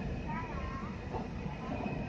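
Steady low rumble of a KRL electric commuter train running along the track, heard from inside the carriage.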